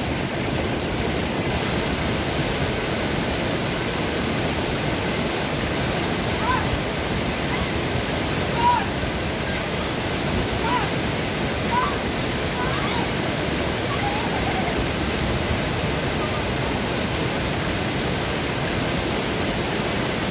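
Small waterfall pouring through a stone weir into a pool: a steady, even rush of falling water.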